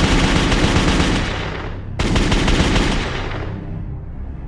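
Sound effect of rapid automatic gunfire in two loud bursts. The second burst starts abruptly about two seconds in and trails off near the end.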